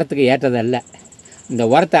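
A man speaking Tamil. In a short pause, a little under a second in, a cricket's high, rapidly pulsed trill is heard for about half a second before he speaks again.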